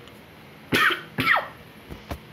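A person coughing twice, about half a second apart, the second cough ending with a falling voiced sound.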